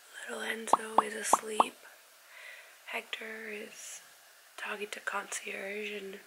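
A woman talking softly, close to a whisper, in three short stretches, with four sharp pops about a second in.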